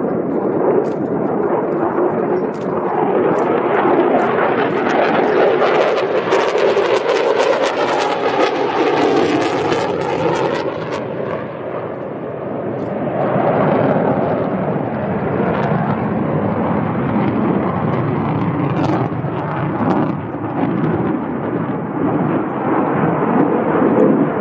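Military jet aircraft flying past, its engine noise swelling over the first few seconds and staying loud, easing briefly around the middle, then building again.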